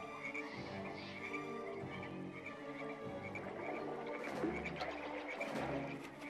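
Frog-like croaking repeating rapidly and steadily over soft instrumental music.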